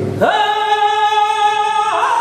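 Male flamenco singer's voice singing a granaína: it sweeps up into one long held high note about a quarter second in and lets it fall just before the end.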